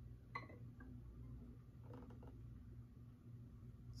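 Near silence: room tone with a faint click about a third of a second in and a few softer ticks after it.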